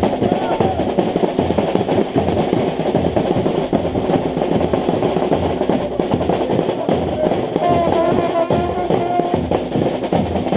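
Marching band (fanfarra) drum section playing: snare drums with rolls over a steady bass drum beat. Near the end a trumpet comes in holding notes over the drums.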